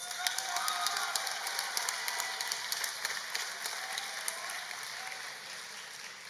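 Audience applauding, with dense clapping that gradually dies down over the seconds.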